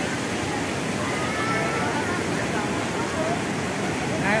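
Steady rush of falling water, with faint voices in the background.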